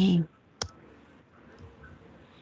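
A single sharp click from a computer keyboard or mouse, made while a note is being typed onto the shared screen, followed by a couple of much fainter ticks.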